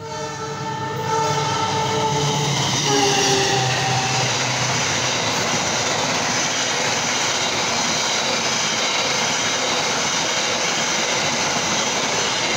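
Passenger train's horn sounding as it comes past, dropping in pitch about three seconds in and fading by about five seconds, then the loud steady noise of the coaches running past close by on the track.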